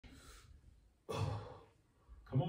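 A woman exhaling with effort while pressing dumbbells overhead: a soft breath, then about a second in a loud sigh that starts suddenly and fades away.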